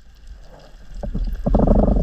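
Underwater rumbling with rapid clicking, picked up through a GoPro's housing, building from about a second in.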